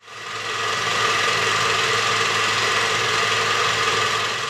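A steady mechanical whirr with a low hum and hiss, fading in at the start and holding evenly: the sound effect of a production company's logo sting.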